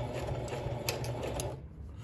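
Singer Heavy Duty sewing machine running, stitching through fleece, then stopping abruptly about one and a half seconds in, with a few sharp clicks just before it stops.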